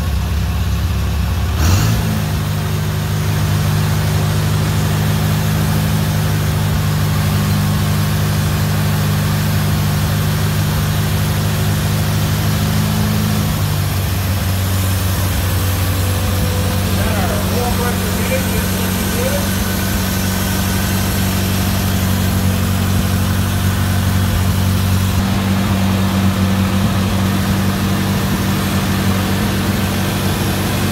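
1950 Farmall Cub's four-cylinder flathead engine running steadily, just started after restoration on a new carburetor. Its speed picks up about two seconds in and eases slightly lower about fourteen seconds in.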